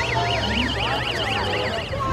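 A siren in a fast yelp, its pitch sweeping up and down several times a second over crowd chatter, cutting off near the end.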